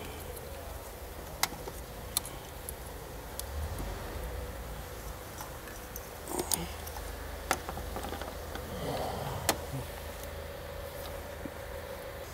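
Plastic electrical connectors of an engine wiring harness being handled and unclipped by hand: a few sharp, separate clicks and some rustling of the wiring over a low steady background hum.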